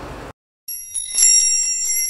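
Bright, bell-like chiming jingle of a channel intro sting. It starts after a moment of silence and rings on with rapid, repeated strikes.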